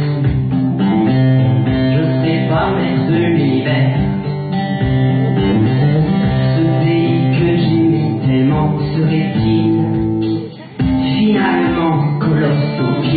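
Guitar-led song accompaniment, with singing over it in places. The music dips briefly about ten seconds in, then comes straight back.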